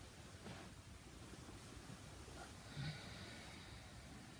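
A person's faint breathing through the nose, slow inhales and exhales while moving through yoga hip circles on hands and knees, with one short soft low sound near three seconds in, against quiet room tone.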